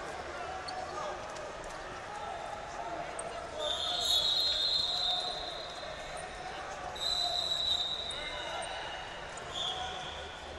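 Wrestling-hall din: overlapping shouts of coaches and spectators with thuds, and sustained referee whistle blasts from the mats. One long whistle comes about four seconds in, another shortly after seven seconds, and a short one at the very end.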